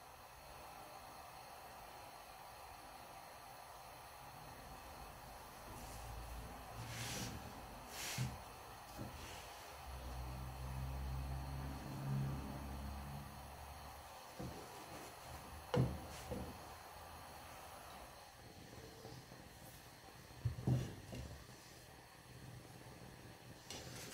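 Faint kitchen background hiss around a pan on a gas stove, with a low rumble in the middle and a few soft knocks and clicks.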